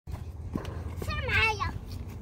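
A young girl's voice: one short, high-pitched call about a second in, falling slightly in pitch, over a steady low rumble.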